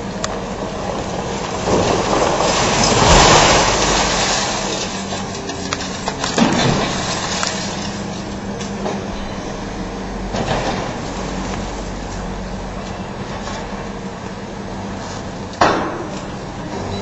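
Diesel engines of hydraulic demolition excavators running steadily while broken concrete crashes down. The longest and loudest crash comes about three seconds in, smaller ones around six and ten seconds, and a short sharp impact near the end.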